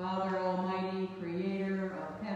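A single voice chanting liturgical text. It holds one pitch for about a second, then moves by a small step to another sustained note.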